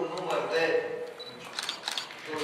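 A man talking, then a quick run of camera shutter clicks from press photographers' SLR cameras near the end.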